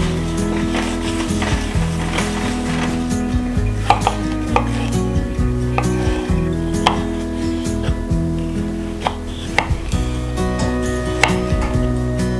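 A kitchen knife cutting tomatoes on a wooden cutting board, the blade tapping the board in sharp irregular clicks every second or so, after a spatula stirring eggs in a frying pan. Soft background music with held notes runs underneath.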